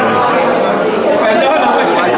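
Speech: a man talking close to the microphone, with other voices chattering in the background of the room.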